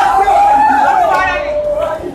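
A woman's voice holding one long sung note that drops lower about two-thirds of the way through, over the chatter of a crowd in a large hall.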